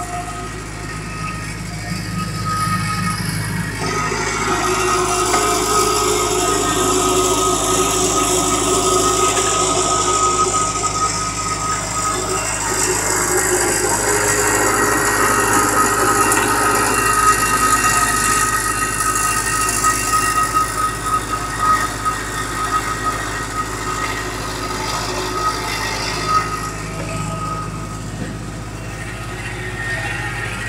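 HDPE butt-fusion pipe welding machine running steadily, its motor and hydraulic unit giving a continuous mechanical drone with a thin high whine throughout.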